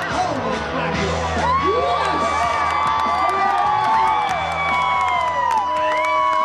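Rodeo crowd cheering, whooping and yelling, many voices shouting over each other, over a steady low hum.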